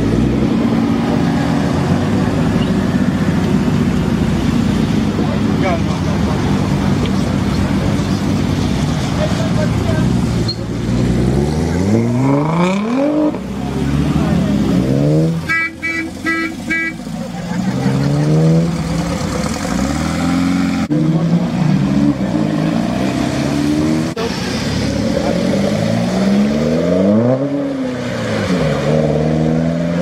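Performance car engines running, then revving and accelerating away one after another in rising sweeps. A car horn toots about four short times about halfway through.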